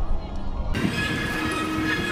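Low wind rumble on the microphone, then, after a sudden change about two-thirds of a second in, a passing elevated monorail train with a steady whine.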